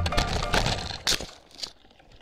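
Background music stopping about a second in, over a few sharp knocks and clatters from a downhill mountain bike crash picked up by the rider's helmet camera; the last knock is about a second and a half in.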